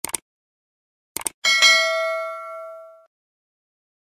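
Sound-effect clicks of a subscribe animation, a quick double click at the start and another pair about a second later, then a bright notification-bell ding that rings out and fades by about three seconds in.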